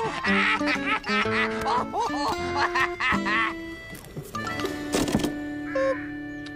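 Comic cartoon underscore music with short stepped notes, over a squawky, cackling character laugh in the first second or so. About five seconds in comes a brief noisy burst, then a long held low note.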